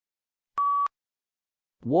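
A single short electronic beep, one steady tone lasting about a third of a second, the cue to start speaking in a PTE read-aloud task. A voice starts reading just before the end.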